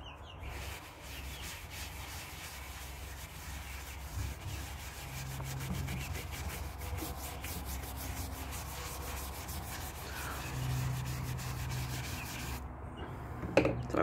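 Big round wax brush scrubbing black soft wax over a waxed, chalk-painted chair back: a steady, fast bristly rubbing that stops about a second before the end.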